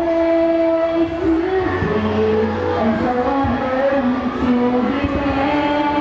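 A group of women singing together into a microphone, holding long notes that move in steps, over low backing music.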